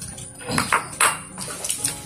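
Chopsticks clinking and scraping against ceramic rice bowls and plates, several light clicks.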